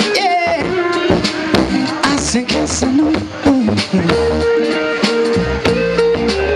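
Live jam band music: a lead line of sliding, bending notes over drum hits, settling into a long held note about four seconds in.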